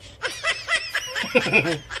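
A man laughing in a quick string of snickers that starts just after the beginning and dies away just before the end.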